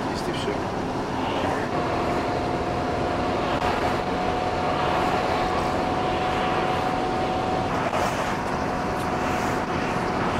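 Steady road and engine noise inside a moving car's cabin, with a thin steady tone running through it from about two seconds in until near the end.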